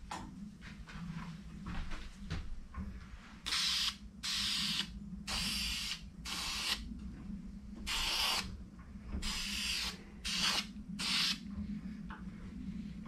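Aerosol can of spray lacquer giving about eight short hissing bursts, each under a second, starting about three and a half seconds in, as a coat goes onto the inside of a turned bowl.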